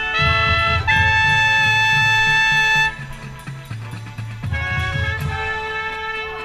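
Marching band brass playing long, loud held chords, with a trumpet right at the microphone and a beat underneath. About three seconds in the playing drops to a quieter passage, then builds again.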